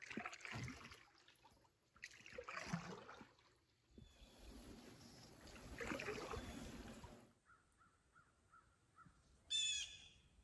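Canoe paddle strokes in calm water, three long swishes with trickling drips over the first seven seconds. Near the end comes one short, harsh bird call.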